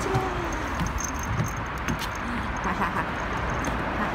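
A dog's metal collar tags jingling and light footsteps on wooden decking, with scattered small clicks over steady outdoor background noise.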